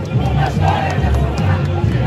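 Samba school percussion with deep, pulsing drum beats under a crowd of voices singing and shouting along.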